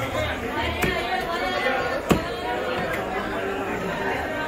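Butcher's cleaver striking through fish onto a wooden log chopping block: two sharp knocks about a second and a quarter apart, the second louder, over a steady background of voices chattering.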